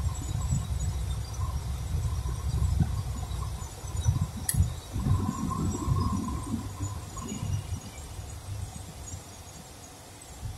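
Low road and engine rumble inside a moving car's cabin, picked up by a phone, fading in the last few seconds as the car nears the lights. A single sharp click comes about four and a half seconds in.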